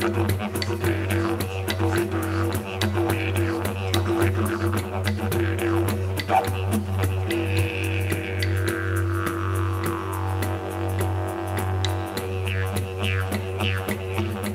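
Didgeridoo playing a continuous low drone with a quick rhythmic pulse. Its upper overtones sweep slowly downward around the middle.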